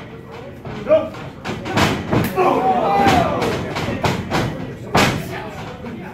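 A series of sharp smacks and thuds from pro wrestlers' strikes and bodies hitting the ring, the loudest about five seconds in. Spectators shout in between.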